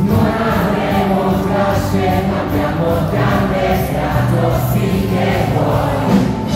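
Live band with drums, upright bass, acoustic guitar and keyboards playing a rock song, while a large audience sings along in chorus over a steady beat.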